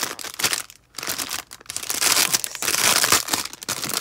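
Clear cellophane bag crinkling as it is handled. There is a brief lull a little under a second in, then a louder, denser stretch of crinkling.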